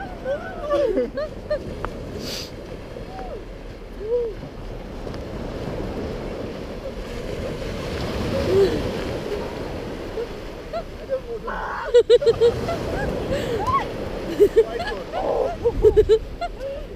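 Shallow surf washing up over the sand in a steady hiss, with sharp splashes from about two-thirds of the way through and brief snatches of voices.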